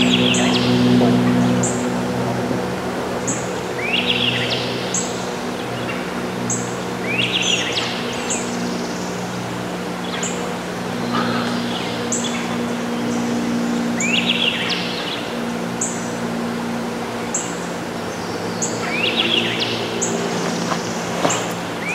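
Songbirds singing in riverside woods: one bird repeats a short rising phrase every few seconds while another gives brief very high notes about every second and a half. A steady low hum runs underneath.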